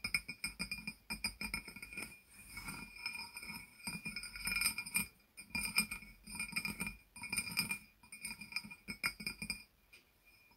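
Fingernails tapping rapidly on a glazed ceramic jar, in flurries of clicks with short pauses between them. Each tap rings with the jar's own clear, bell-like tones.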